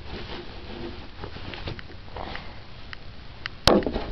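Soft sniffing and small handling noises, then one sharp knock near the end as the plastic body-spray bottle is set down on the glass stand.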